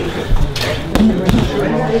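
Several gloved punches thudding into a heavy bag in quick succession, each thrown with a boxer's sharp hissing exhale.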